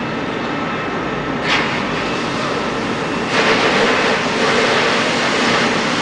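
Steady engine and street noise, with a short hiss about a second and a half in; just past three seconds a louder hiss starts and holds: a fire hose spraying water onto a burning car's engine compartment, sending up steam.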